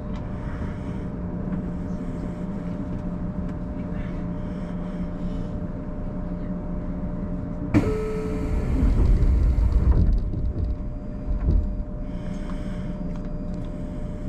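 Steady hum of an electric train standing at a station. About eight seconds in, a sudden loud rush of noise with a deep rumble lasts about two seconds, followed by a shorter thump.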